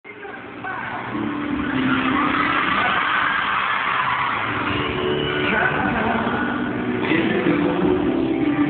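A concert crowd screaming and cheering, building up quickly over the first second, with band music and singing under it.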